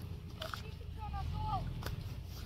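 Quiet outdoor background: a steady low rumble with two faint clicks, and faint distant voices in the middle.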